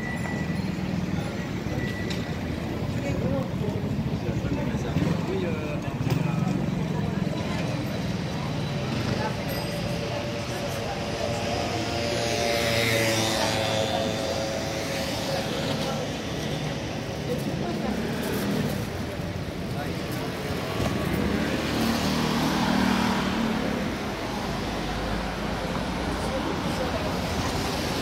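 Busy city street: road traffic passing, with the voices of people walking by.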